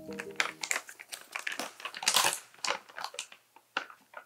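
Plastic zip-top bag of dried flake coconut crinkling and crackling as it is pulled open. It is a quick run of rustles, loudest a little past halfway, and a few scattered crackles follow near the end.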